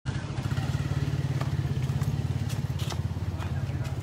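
Motorcycle engine idling steadily, a low rumble with a rapid even pulse, alongside voices.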